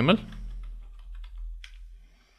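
Computer keyboard typing: a quick run of light keystrokes as a file name is typed in, ending after about a second and a half, over a faint steady low hum.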